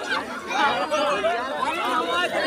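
Several people talking at once, their overlapping voices making a steady babble.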